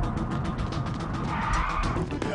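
A car braking hard, its tyres skidding briefly about a second and a half in, over an action music score.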